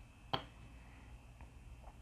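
A single sharp click about a third of a second in, against quiet room tone, with a few faint ticks after it.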